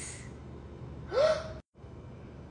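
One short gasp about a second in, the voice rising in pitch, breathy; otherwise only faint room tone.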